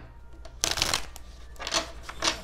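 A deck of tarot cards being shuffled by hand: two bursts of the cards rustling and slapping together, a longer one about half a second in and a shorter one near the end.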